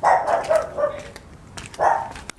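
A dog barking several times, loudest at the start and again near the end.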